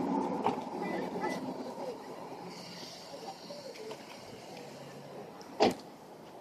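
Faint voices in the first two seconds over a steady outdoor background noise, then a single sharp knock near the end.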